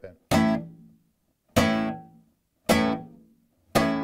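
Flamenco guitar chord struck four times by the right hand hitting down across all the strings, about one strike a second, each ringing briefly and dying away before the next.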